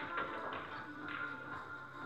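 Background music playing steadily, with a sharp click of billiard balls at the start and a lighter click just after.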